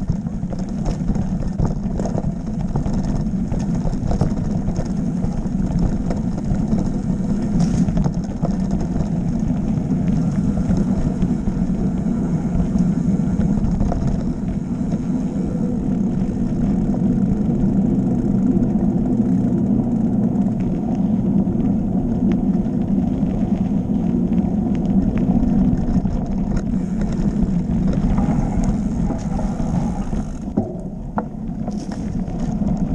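Mountain bike rolling along a dirt trail: a steady rumble of the tyres on the ground and the bike shaking, with a few short clicks and knocks over bumps.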